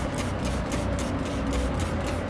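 Steady low background noise with a faint hum; no separate sound stands out.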